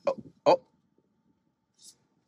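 A voice giving two short, surprised 'oh' exclamations about half a second apart, then near silence.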